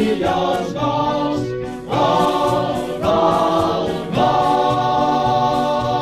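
Choir singing a football club anthem over instrumental backing. The second half is three long held sung notes, each starting about a second after the last.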